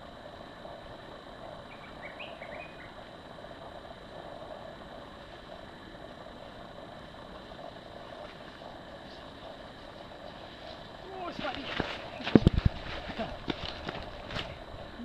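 Steady outdoor background with a brief high chirp about two seconds in. Near the end a mountain unicycle reaches the camera over dry leaves and dirt: a burst of crackling and sharp knocks, with a short voice sound among them.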